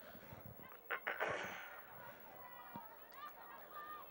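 Distant players' voices calling out across an outdoor soccer field. About a second in there is a short, loud burst of noise with a couple of sharp strokes.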